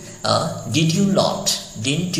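A man's voice speaking; only speech, no other sound.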